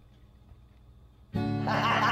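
Quiet room tone, then an acoustic guitar starts strumming suddenly about a second and a half in, loud chords with quick repeated strokes.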